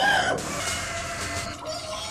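A person's loud, strained vocal cry right at the start, rising and falling in pitch, followed by further fainter strained vocal sounds.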